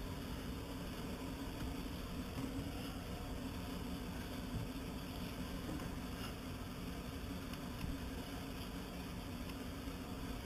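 Steady low hum with an even hiss, and a couple of faint small knocks.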